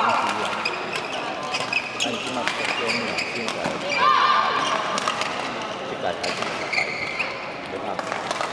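Badminton play on an indoor court: sharp shuttlecock hits and court shoes squeaking, with a short squeak at the start and a longer one about four seconds in. A murmur of voices runs underneath.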